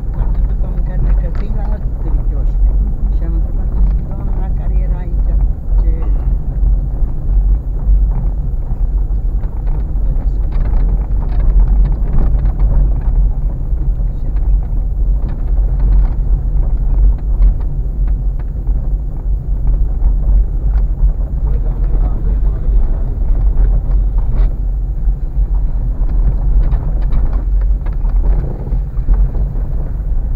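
Car driving slowly over a rough, potholed dirt road, heard from inside the cabin: a steady low rumble of engine and tyres with frequent short knocks and rattles as the car goes over the bumps.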